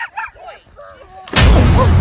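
A high-pitched voice exclaiming, then a very loud, distorted blast about one and a half seconds in that lasts under a second.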